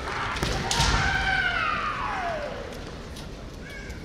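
A sharp impact about a second in, then a kendo fencer's long kiai shout whose pitch falls steadily over about two seconds.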